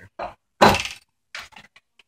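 An RC tank chassis with its gearboxes exposed is handled and tipped onto its side on the bench. A few short knocks sound, the loudest a brief clatter just over half a second in, followed by lighter taps.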